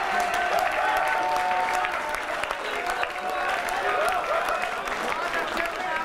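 Audience applauding and laughing, a dense run of clapping with many voices over it.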